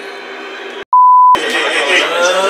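A loud, steady single-pitch bleep of about half a second, a little under a second in. It is pitched near 1 kHz and all other sound is cut out beneath it: an edited-in censor bleep over a spoken word.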